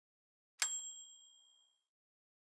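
A single bright bell ding sound effect, the notification-bell chime, struck about half a second in and ringing away over about a second.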